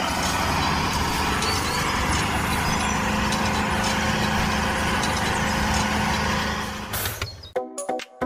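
Tractor engine sound running steadily with a low throb as the tractor pulls a disc harrow through mud. It fades about seven seconds in, and electronic music with a beat starts just before the end.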